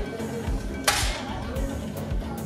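A single sharp shot from a 10 m air rifle about a second in, over background music with a steady beat.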